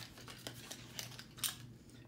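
Faint clicks and light handling noise from a metal fire extinguisher being turned in the hands, the clearest click about one and a half seconds in, over a low steady hum.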